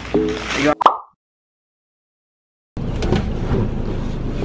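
A short, sharp pitched pop about a second in, then complete silence for nearly two seconds. After that, a steady low rumble of a car cabin comes in.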